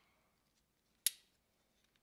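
A single sharp click about a second in: the small metal end cap of a cordless soldering iron being fitted back over its USB port; otherwise near silence.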